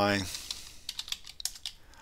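Computer keyboard typing: an uneven run of quick key clicks as a short terminal command is typed and entered.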